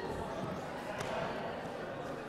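Indistinct chatter of many people in a large hall, with a single sharp knock about a second in.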